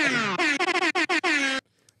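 Air horn sound effect played over a musical bed in a rapid string of short, loud blasts, with the pitch sweeping downward in places. It cuts off suddenly about a second and a half in.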